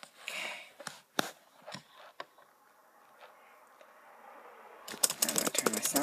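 A few separate clicks of keys pressed on a BrailleNote Apex braille keyboard, with a soft rustle just after the start; about five seconds in, fast speech starts.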